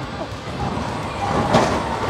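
Roller coaster train running along its steel track, a rushing rumble that swells and peaks near the end.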